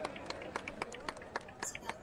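Scattered sharp claps and clicks at an uneven pace over a low murmur of crowd voices.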